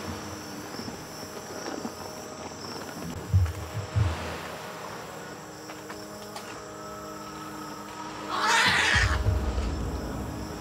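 Night insect ambience under a low, steady suspense-music bed, with two soft low thuds about a third of the way in. Near the end a loud whoosh swells up and gives way to a low rumble as the scary underscore takes over.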